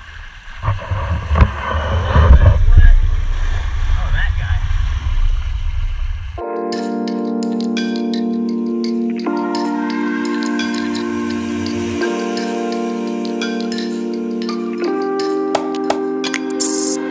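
Wind and water rushing over an outdoor camera microphone, a loud, uneven rumble, for about six seconds. It cuts abruptly to music: sustained chords with bell-like tones.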